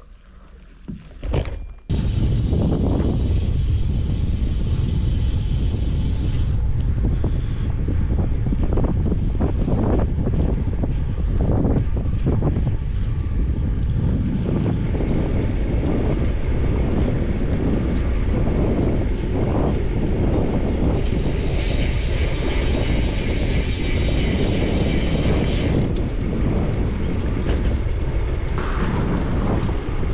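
Wind buffeting the microphone of a handlebar-mounted camera on a moving bicycle: steady loud rushing noise that starts about two seconds in, after a quiet moment with a few clicks.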